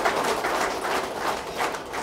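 Audience applause dying down, many claps thinning out toward the end.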